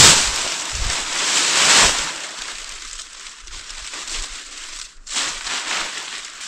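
Cut leafy branches rustling and crackling as they are handled and piled up. There are loud bursts at the start, a second or so in and again about five seconds in, with softer rustling between.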